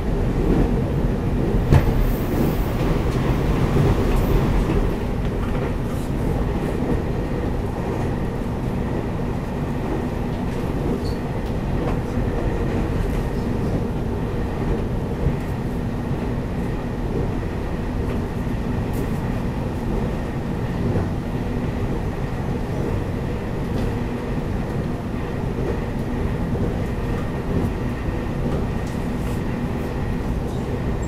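Cabin noise of a Taiwan Railways EMU800 electric train running at speed: a steady rumble of wheels on rail with a constant hum, a little louder in the first few seconds. A sharp click sounds about two seconds in.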